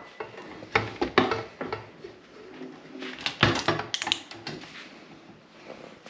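Irregular knocks and clatter from a small all-metal fan and its box being handled as it is unpacked, with the loudest knocks about three and a half seconds in.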